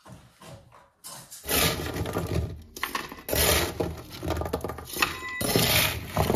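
Gritty scraping and crunching of broken brick and tile rubble, in several long strokes that start about a second and a half in.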